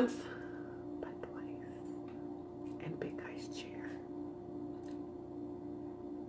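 Quiet pause: a faint steady low hum, with a few soft clicks and faint mouth sounds.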